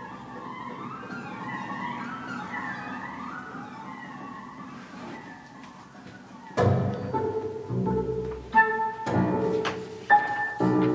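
Contemporary classical ensemble music with bowed strings. Sliding, wavering string lines play softly, then about two-thirds of the way through a sudden loud low attack comes, followed by several more loud accented chords.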